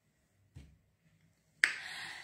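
Mostly quiet pause with a faint low thump about half a second in, then a single sharp click about one and a half seconds in, followed by a short fading hiss.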